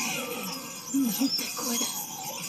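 Quiet Japanese voice-acted dialogue from the subtitled anime episode playing back, a few short spoken phrases, with faint background music.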